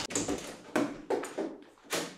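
A wooden door being opened: a run of short clunks and rattles from the latch and door, four or five in about two seconds.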